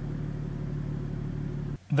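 Steady low hum of an idling vehicle engine, cutting off abruptly near the end.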